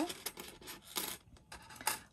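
Thin metal cutting dies being slid and set down on a cutting mat: light rubbing and rustling, with two small sharp metallic clicks, about a second in and near the end.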